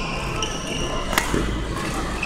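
A badminton racket strikes a shuttlecock once with a sharp crack about a second in, amid high squeaks of court shoes and footfalls.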